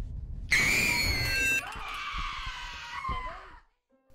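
A woman screaming: a loud, high scream starts suddenly about half a second in, then goes on as a rougher, noisier cry over a low rumble and cuts off shortly before the end.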